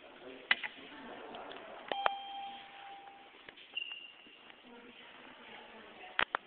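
Elevator chime: a single ding about two seconds in that rings for about a second and a half, followed by a shorter, higher tone about two seconds later, with a couple of sharp clicks before it.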